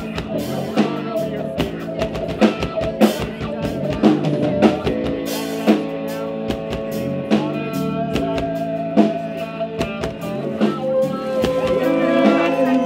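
Worship band music with a drum kit and guitar: held chords over repeated drum hits.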